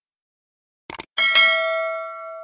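Subscribe-button animation sound effects: a quick double mouse click just before a second in, then a bright notification-bell chime that rings on and fades out slowly.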